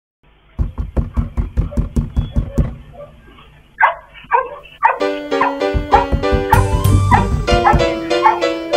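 Rapid knocking on a front door, about six knocks a second for two seconds, then a dog barks a few times; from about five seconds in a piano tune plays over it.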